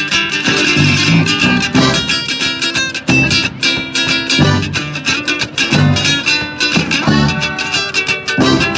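A live band playing an instrumental passage: strummed guitars over a steady drum beat, with accordion and saxophone in the band.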